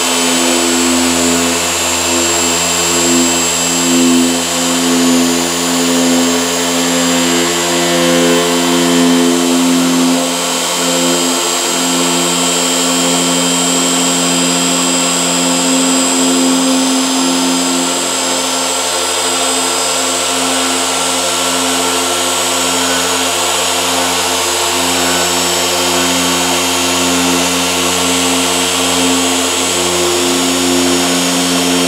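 Griot's Garage 6-inch dual-action random orbital polisher running steadily, a microfiber pad working compound over car paint. Its hum changes slightly about ten seconds in.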